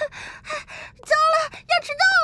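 A cartoon character's high-pitched voice gasping breathlessly in several quick puffs, then two short voiced cries near the end.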